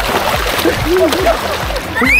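Pool water splashing around swimmers in a current channel, loudest in a burst at the start, with short voice sounds through the rest.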